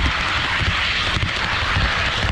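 HO scale model train running along the track close to the microphone: a steady running noise of wheels on rail and motor whir, with an uneven low rumble underneath.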